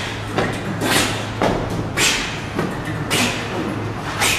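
A steady rhythmic beat of short, sharp hissing strokes, about two a second, over a constant low hum.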